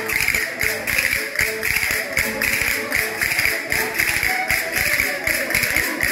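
Button accordion playing a lively folk tune, with a held note and pulsing chords, over a quick, steady percussive beat of about three to four strokes a second.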